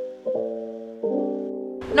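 Soft background music on a keyboard or piano: sustained chords, struck anew about a third of a second in and again about a second in, each fading away.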